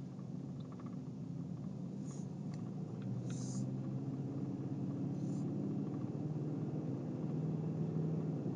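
Steady low drone of a truck's engine and tyres at highway cruising speed, heard from inside the cabin, growing slightly louder as it goes.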